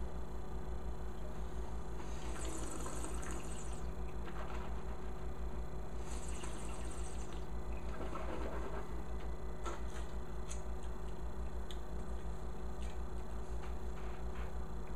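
A mouthful of white wine being sipped and slurped with air drawn through it, as tasters do: two hissing slurps a few seconds apart. Then come a few light clicks and knocks of objects handled on the table, over a steady electrical hum.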